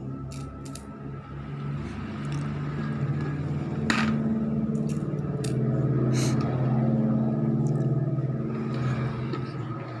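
Coins clicking and clinking as they are pushed one by one through the slot of a plastic coin bank, a handful of sharp clicks with the loudest about four seconds in, over a steady low hum that swells in the middle.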